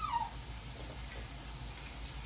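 A single short high whining call right at the start, rising in pitch and then falling away within about half a second, followed by faint background.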